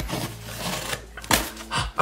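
Box cutter blade scraping and slicing along packing tape on a cardboard box, then the cardboard ripping open, with two sharp tearing sounds in the second half.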